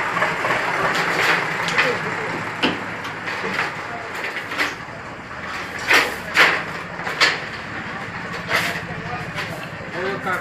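Semi-automatic chain link fence machine running with a steady hum, while the formed wire links clink and rattle against each other and the table in several sharp metallic clicks, loudest around six to seven seconds in.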